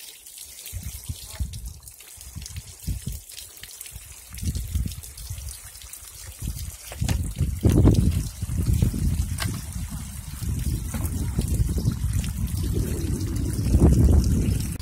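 Water trickling and splashing into a gold sluice box. About halfway through, a scoop of wet dirt is poured in at the head, and the splashing grows louder after it.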